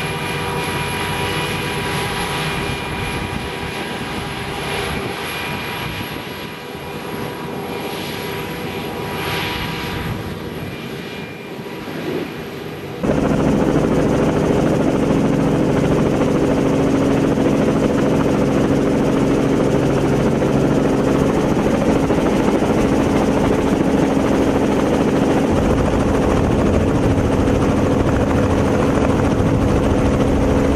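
Self-propelled forage harvester running as it chops maize and blows it into a trailer, a steady high whine over the engine. After a sudden cut about halfway through, a louder steady engine drone with a strong low hum takes over.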